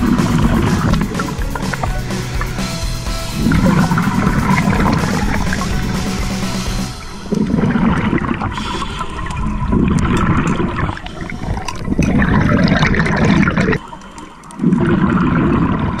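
Scuba diver breathing through a regulator, the exhaled air bubbling out in loud rushing bursts every two to four seconds, heard underwater.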